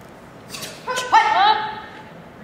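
A short rustle, then two short high-pitched shouts that rise in pitch and level off: kihap yells from young Tae Kwon Do students as they complete a technique in a pattern.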